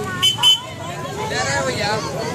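Crowd voices on a busy street, with two short, high-pitched vehicle horn beeps in quick succession near the start.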